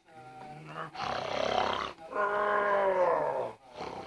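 A man making playful growling, roaring noises at a baby: a short low voiced sound, then a loud rough growl about a second in, then a long drawn-out roar that sinks slightly in pitch and stops near the end.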